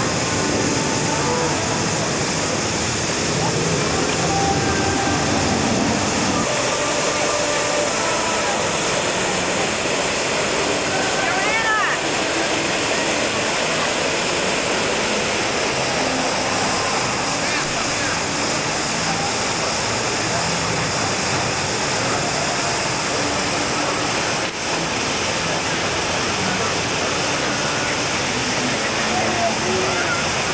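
Large fountain's water jet splashing steadily into its pool, a continuous rushing sound.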